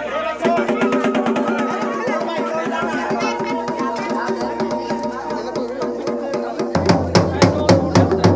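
Traditional dhol drum beaten in a fast, dense rhythm over a steady held drone, with voices underneath. About seven seconds in the strokes turn heavier and louder.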